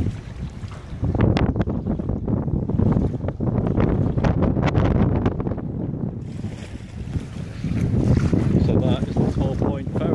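Wind buffeting the microphone in uneven gusts, with water sloshing at the shore.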